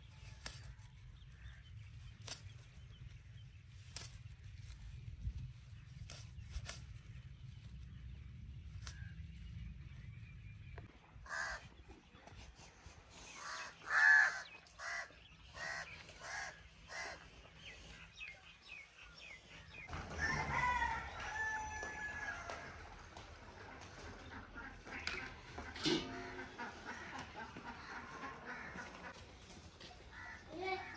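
Chickens calling in a run of short calls, then a rooster crowing about twenty seconds in.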